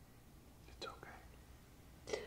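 Near silence with one brief, soft, near-whispered voice sound about a second in, from the film's quiet, tearful dialogue.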